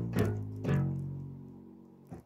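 Yamaha PSR-520 keyboard sounding a synth bass voice: a couple of low notes, the last starting well under a second in and held, fading away.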